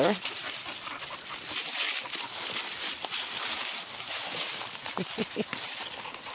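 Dogs play-wrestling on dry fallen leaves: continuous scuffling and leaf rustling, with a few brief dog vocalizations about five seconds in.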